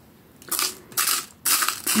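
Jewellery-making supplies (small packets or containers of beads) being handled: three short rustling bursts about half a second apart, starting about half a second in.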